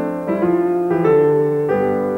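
Solo piano playing classical music: several chords struck in slow succession and left to ring.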